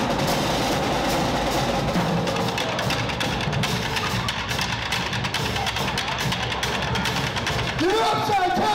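School drumline playing a fast cadence on snare drums, tenor drums and bass drums, with dense stick strokes throughout. Voices start shouting and cheering near the end.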